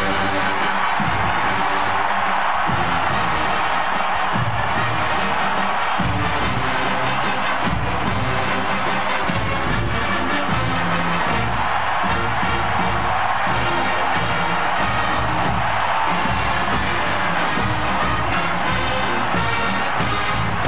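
Marching band playing a brass tune, with a stadium crowd cheering underneath.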